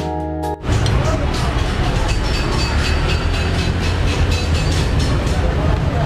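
Keyboard background music that cuts off just under a second in, giving way to loud, steady road-traffic rumble with voices in the background.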